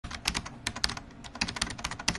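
A rapid, irregular run of sharp clicks like keyboard typing, about a dozen a second: the sound effect laid under the intro's countdown graphic.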